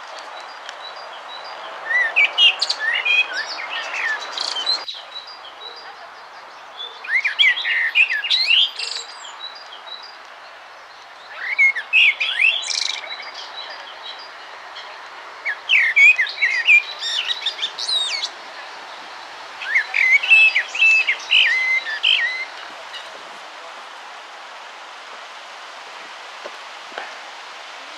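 A songbird singing five short phrases of rapid, high chirps a few seconds apart, over a steady background hiss.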